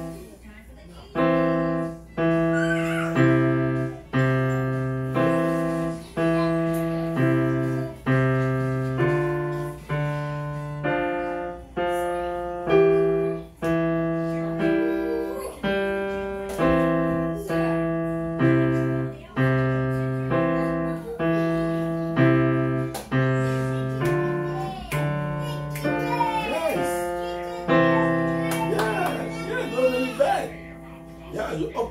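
Digital keyboard in a piano voice, played by a beginner: a slow, even run of single notes and chords, about one a second, each fading before the next. This is a practice variation of a piano exercise, starting about a second in.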